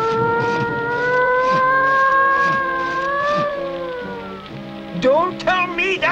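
Stormy cartoon soundtrack: a long wailing tone held about four seconds, rising slightly then falling, over music and the hiss of rain. Near the end a quick wavering, moan-like voice follows.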